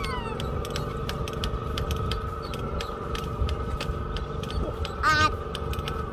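Steady hum of a distant ride-on rice transplanter's engine working across a flooded paddy, over a low rumble. A short call rings out about five seconds in.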